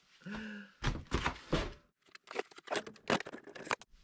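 Close handling noise: rustling and scraping with many quick clicks, the busiest part in the second half, after a short voiced sound from a person near the start.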